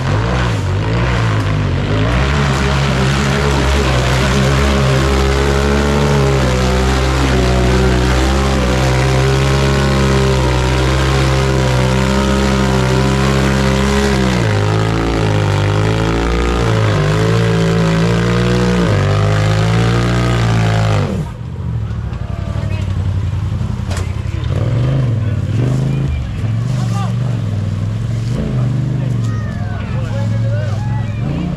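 Rock bouncer buggy's engine revving hard and unevenly, its pitch jumping up and down as it climbs a steep dirt hill. The engine sound stops abruptly about two-thirds of the way through, leaving spectators' voices and shouting.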